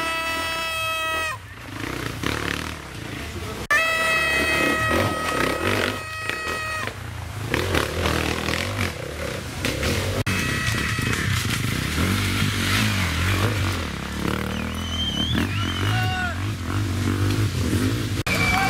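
Off-road enduro motorcycle engines revving hard on a muddy climb, held at high revs in two bursts of a second or two, near the start and about four seconds in, with more uneven revving later.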